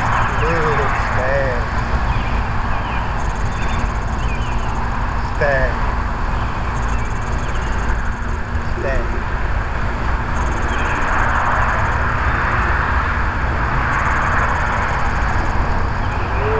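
Steady low rumble of outdoor background noise, with a few short, faint arched chirps now and then.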